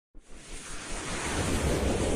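A whoosh sound effect: a rush of noise that swells up from silence over about the first second and a half and then holds, opening a news channel's animated logo intro.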